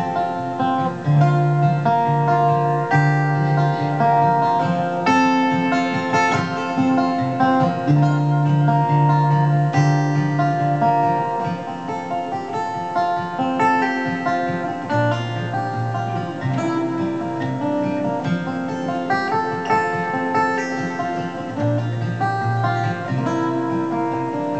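Solo steel-string acoustic guitar, capoed, playing an instrumental passage of picked chords over a bass line that changes note every second or so. It drops a little in loudness about halfway through.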